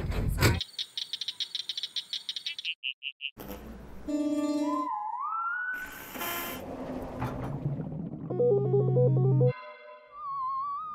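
An electroacoustic noise melody stitched from short recorded sounds of different sources, one after another: a rattling run, brief high beeps, a gliding pitched tone like a theremin, a burst of hiss, and near the end a low reedy chord with a stepping melody over it.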